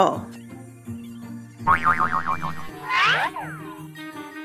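Cartoon boing sound effects over light background music: a wobbling, bouncing boing about two seconds in, then a springy swooping boing about a second later.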